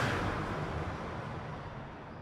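Intro sound effect: a noisy whoosh with a low rumble under it, fading away steadily.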